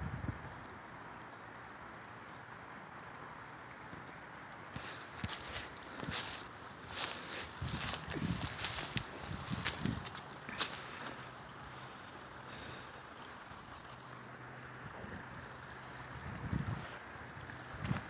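Footsteps on dry leaf litter and twigs: an irregular run of crackling steps from about five seconds in until about eleven, and a few more near the end. Under them is a faint steady outdoor hiss.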